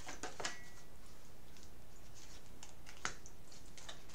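A deck of tarot cards being shuffled by hand: a scattering of light, irregular card flicks and taps, with one sharper snap about three seconds in.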